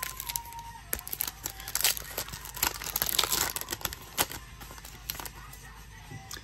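Foil wrapper of an Optic basketball card pack being torn open and crinkled by hand: a run of sharp rips and crackles, busiest in the middle.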